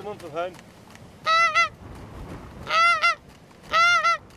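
Goose honking: three loud two-note honks, the first about a second in and the others about a second apart, over a quiet background.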